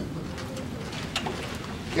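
Room tone in a pause between a speaker's phrases: a low, steady background noise with a couple of faint clicks about midway.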